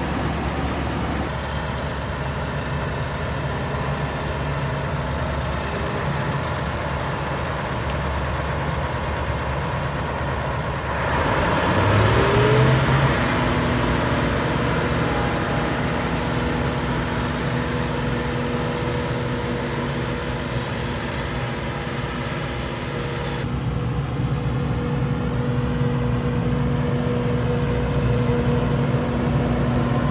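Claas Jaguar 860 self-propelled forage harvester running under load as it chops maize for silage, a steady heavy engine drone. About eleven seconds in it gets louder and its pitch rises briefly as the engine revs up, then it settles back to a steady drone.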